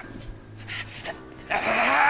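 A male anime voice actor's power-up scream in a German dub: a low, strained growl, then about one and a half seconds in a loud, drawn-out yell starts, its pitch arching up and over.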